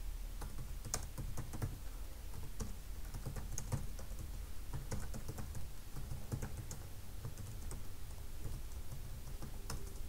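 Typing on a computer keyboard: a run of irregular keystroke clicks, some quick bursts and short pauses, over a low steady hum.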